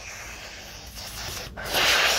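A rustling, rubbing noise with no clear pitch that grows louder near the end.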